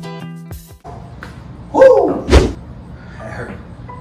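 Background music cuts off under a second in. About two seconds in a man lets out a loud groan of effort that falls in pitch, and a single heavy thump comes right after it.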